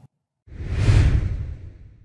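A whoosh sound effect for a logo end card, with heavy bass under a rushing hiss. It swells in about half a second in, peaks around one second and fades away over the next second.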